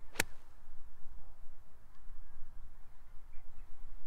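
A single sharp click of a 7 iron striking a golf ball, a clean strike, about a quarter of a second in. A low steady rumble follows.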